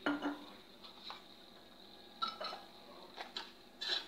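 Metal utensils clinking against cookware: about eight sharp, short clinks and taps at uneven intervals, a few with a brief ring.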